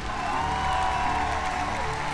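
Applause with light background music underneath, steady throughout, welcoming a guest onto a show.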